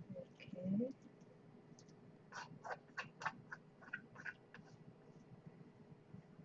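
A brief vocal sound, rising in pitch, about half a second in; then from about two seconds in, a run of about ten quick scrapes and taps of chopsticks against a wok as stir-fried noodles are worked out of it onto a plate.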